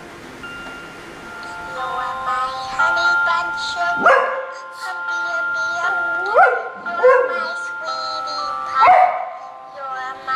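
A dog howling along to music: several rising howls, each sliding up in pitch, over a simple melody of held, chiming notes.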